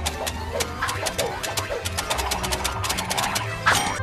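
Rapid, irregular clacking of cartoon adding-machine keys being stamped on, over orchestral cartoon music, with a louder hit just before the end.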